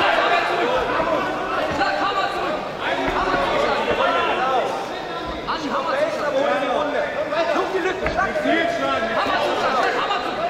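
Crowd of fight spectators shouting and talking, with many voices overlapping and no single voice standing out.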